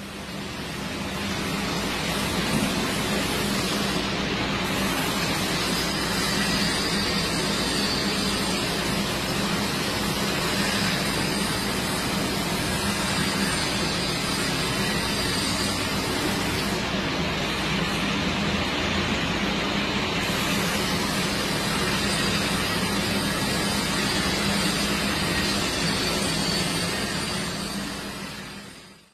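Angle grinder cutting steel: a steady grinding rush with a faint high whine, fading in at the start and out at the end.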